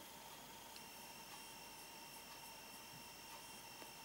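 Near silence: faint room tone with a thin, steady high-pitched electronic whine, a second tone joining about a second in.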